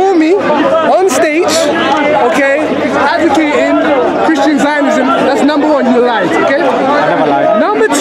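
Speech only: men's voices talking over one another.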